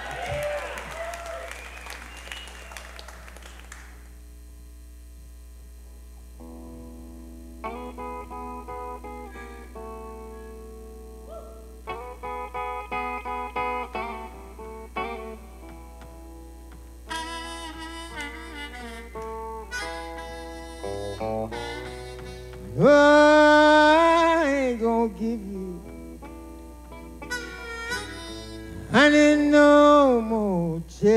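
Electric blues: an electric guitar picks single notes and short phrases. A harmonica joins with bent notes, loudest about two-thirds of the way through and again near the end.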